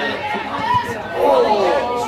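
People chatting close to the microphone, more than one voice. The talk is not clear enough to make out words.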